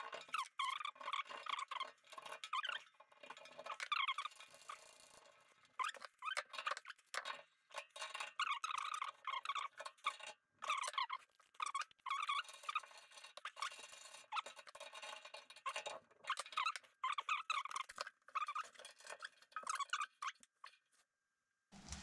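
Faint, intermittent squeaks and small clicks from brass radiator valve fittings and adapters being screwed and handled by hand, in short bursts every second or so.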